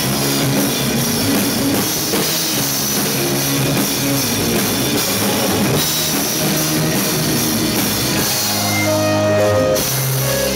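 Live rock band playing: drum kit and electric guitars together, loud and dense. Near the end the band holds a sustained chord for about a second before moving on.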